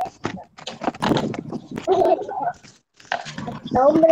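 Indistinct talking in short broken snatches, mixed with scattered clicks and knocks, with a brief lull about three seconds in.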